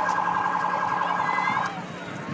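A vehicle's electronic siren sounds a fast-warbling tone for about a second and a half, then cuts off abruptly.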